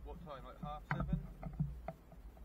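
A faint, indistinct voice speaking, followed by a few short sharp clicks.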